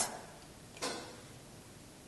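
A single short click about a second in, against quiet room tone.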